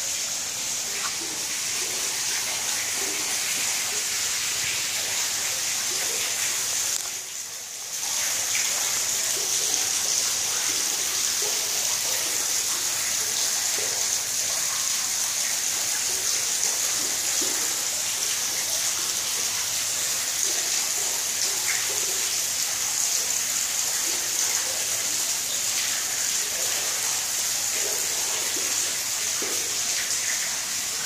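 Steady rush of running water, as from the water feature or filtration of an alligator exhibit's pool, briefly dropping away about seven seconds in.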